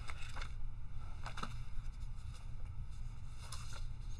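Faint rustling and a few soft ticks of thin breviary pages being leafed through while searching for a place in the book, over a low steady hum.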